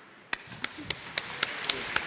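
Hands clapping in a steady rhythm, about seven sharp claps at roughly four a second, over a growing wash of wider applause.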